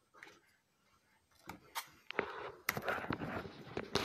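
Handling noise from the phone that is recording: rustling and rubbing with scattered sharp clicks and taps as it is gripped and moved. The first second and a half is nearly quiet; the clicks begin about halfway in and the rustling grows loudest in the last second or so.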